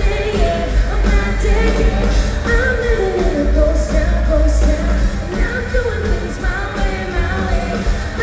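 A live band playing a dark-country rock song: a woman singing lead over electric guitars, bass and drums, heard from the crowd in a hall, with a heavy, booming low end.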